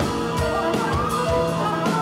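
Live avant-rock band playing: electric guitar and bass over a drum kit, with drum and cymbal hits falling in a steady run under sustained pitched lines.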